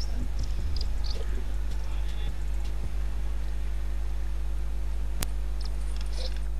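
A steady low electrical hum with evenly spaced overtones, and a few faint short high sounds in the first second. A single sharp click comes about five seconds in.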